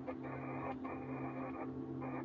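Dark ambient drone track: a low steady hum under stuttering, band-limited bursts of radio-like static that cut in and out several times a second.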